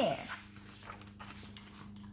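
A page of a hardcover picture book being turned by hand: a faint rustle of paper over a low steady hum.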